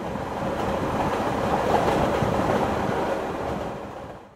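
A rushing whoosh of noise with a low rumble, starting suddenly, building to its loudest about halfway and fading out near the end: a transition sound effect.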